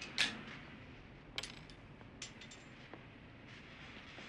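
A beer can opened with a short hiss just after the start, followed by scattered light metallic clinks and taps.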